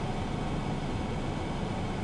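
A steady low rumbling noise with a faint hiss over it, even throughout and with no distinct events.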